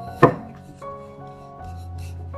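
A wooden rolling pin knocks once, sharply, against the work surface about a quarter second in, followed by faint soft sounds of handling and rolling on the dough, over soft background music.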